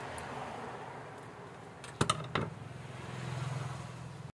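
Two sharp clicks of a thin metal rod and small reel-handle parts knocking on a hard tabletop about two seconds in, a fraction of a second apart, over a steady low hum.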